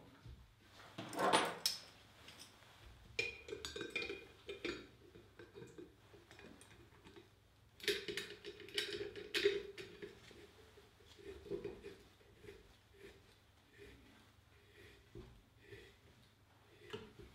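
A stainless steel cartridge filter housing being assembled and sealed by hand, its metal parts clinking and knocking in several short spells with quieter gaps between.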